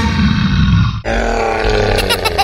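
Cartoon monster growling-grunt sound effect: a deep grunt that swells and is cut off abruptly about a second in, followed by a held, pitched groan that slowly falls.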